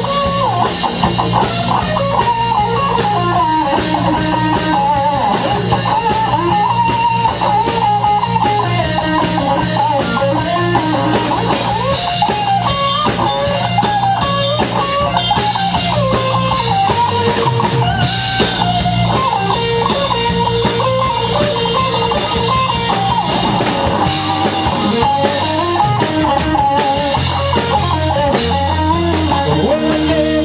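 Live blues-rock band playing an instrumental break: an electric guitar lead with bending, wavering notes over bass guitar and drum kit, loud and steady throughout.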